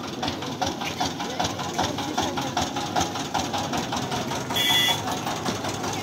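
Small stationary engine driving a roadside sugarcane juice crusher, running steadily with a rapid, even knocking beat. Voices murmur in the background, and a brief high-pitched sound comes about two-thirds of the way through.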